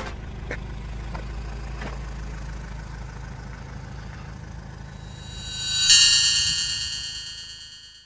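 Opel Vivaro van's engine idling with a steady low rumble and a few faint ticks. About six seconds in, a bright chime rings out and fades away.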